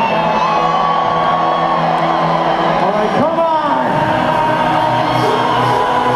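Loud electronic dance music over a large PA, heard from within the crowd, with people whooping and cheering. A sliding pitch sweep rises and falls about three seconds in.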